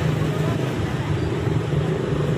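A motor running steadily with a low, even hum, heard under a constant hiss.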